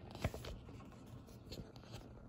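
Hands handling earphone unboxing packaging and a paper-wrapped charging cable on a wooden table: a short cluster of scrapes and taps about a quarter second in, and another brief scrape about a second and a half in.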